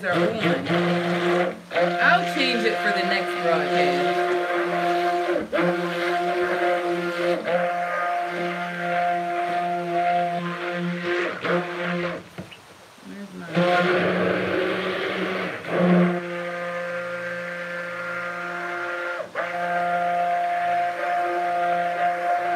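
Cuisinart stick blender running in a stainless stock pot of soap batter, a steady motor hum that cuts out for about a second past the halfway point and then starts again. The blending brings the oils and lye to a light trace.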